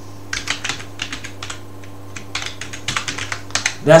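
Keystrokes on a computer keyboard typing a file name: quick clicking in two short runs, with a pause of over a second between them.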